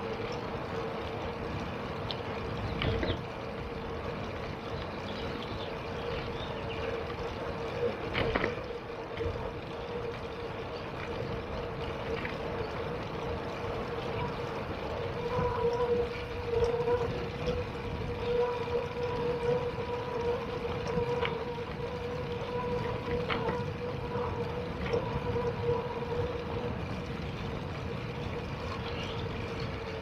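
Riding noise from a bicycle on a path: a steady rumble with a steady mid-pitched whine throughout and a few short clicks.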